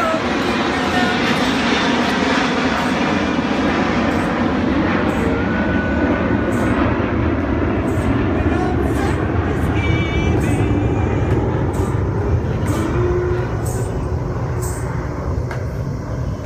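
A male voice sings with an acoustic guitar under a loud, steady rumble of an aircraft passing low overhead. The rumble is heaviest in the middle and eases a little near the end.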